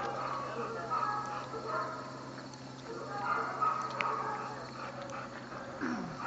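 A dog whining in high, wavering calls that come and go.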